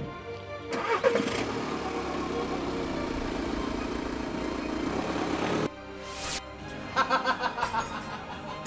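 A car engine starting about a second in and then running steadily, cutting off abruptly a little before six seconds.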